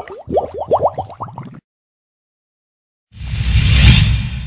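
Logo-animation sound effects: a quick run of about ten short rising pitch glides in the first second and a half, then dead silence. About three seconds in comes a loud swell of rushing noise over a deep low rumble, which then fades out.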